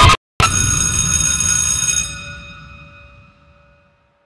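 A bell-like chime: a short loud hit, then a chord of steady ringing tones about half a second in that fades out over the last two seconds.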